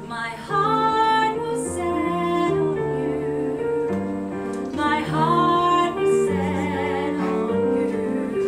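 A woman singing a musical theatre song to grand piano accompaniment, in two phrases: the first begins about half a second in, the second about five seconds in, with vibrato on held notes.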